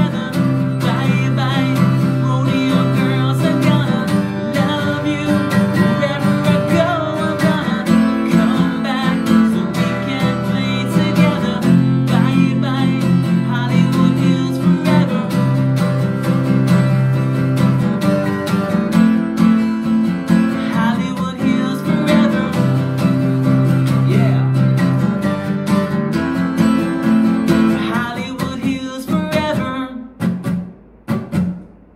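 Maton acoustic guitar strummed in full chords, with the low notes changing every couple of seconds as the chords change, dying away near the end.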